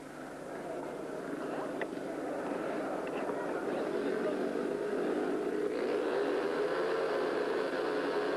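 Several speedway motorcycles' single-cylinder engines revving at the start gate, growing louder over the first six seconds or so and then holding steady as the riders wait at the tapes.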